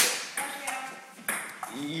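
A ping-pong rally: a few sharp clicks of the celluloid ball on paddles and table. It opens on the fading end of a sneeze, and laughter and coughing come in near the end.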